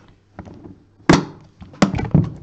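Lid of a hard-shell, foam-lined briefcase shut by hand: a thunk about a second in, then a sharp click shortly before the end.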